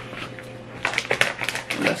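Shiny plastic mailer bag crinkling and crackling as it is handled and opened. The rapid run of crackles starts about a second in.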